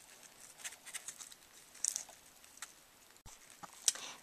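Dry wheat straws faintly crackling and ticking in the fingers as they are folded over one another into a plait: a scatter of small, irregular clicks.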